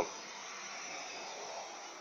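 Steady, faint hiss of background noise with no distinct events, fading slightly near the end.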